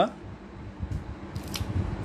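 Thin plastic keyboard membrane sheets rustling and crinkling as they are handled, with a sharp click about a second and a half in.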